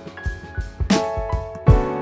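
Boom bap hip-hop beat playing back from the MPC: sustained piano chords from an AIR Mini Grand virtual piano over kick and snare drums, with a snare hit about halfway through.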